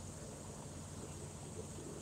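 Low, steady hum inside a semi-truck cab, the sound of the truck's engine running.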